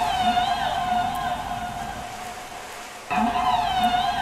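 Intro of a 1996 dream/progressive house track: a synth sound with a held tone and wavering, siren-like pitch bends over low sliding notes. The phrase starts again about three seconds in, louder.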